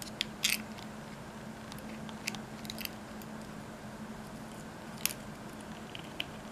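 Small clicks and scrapes of jumper-wire pins being pushed into a breadboard and Arduino headers: a few sharp ones, the loudest about half a second in and another near five seconds, over a faint steady hum.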